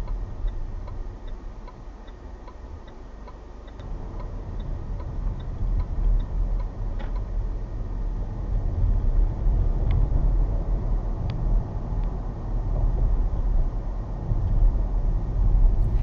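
Range Rover cabin noise while driving, picked up by the dash cam's built-in microphone: a steady low engine and road rumble that grows louder about four seconds in. Over it, a turn indicator ticks evenly, about two or three times a second, for the first several seconds, and a few single sharp clicks come later.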